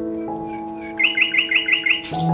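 Soft instrumental background music with sustained held notes; about a second in, a fast trill of high bird-like chirps, roughly eight a second, joins it.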